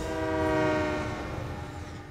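Diesel locomotive air horn sounding one long chord of several tones as the train rushes past. Its pitch drops slightly as it goes, and it fades near the end.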